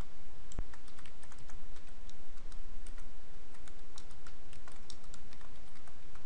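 Typing on a computer keyboard: a run of irregular keystrokes, several a second, with one heavier thump about half a second in, over steady background noise.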